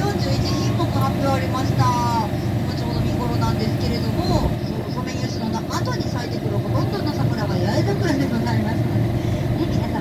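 Engine of an amphibious tour bus running with a steady low drone as it cruises on the river, with people's voices over it.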